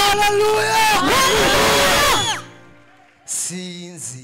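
Male lead singer belting a gospel line into a handheld microphone over sustained keyboard chords, his voice wavering with vibrato. The voice drops away about two and a half seconds in, leaving the keyboard softly held, and a short loud vocal outburst comes near the end.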